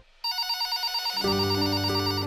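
A telephone ringing with a rapid electronic trill. Background music with sustained low notes comes in about a second in.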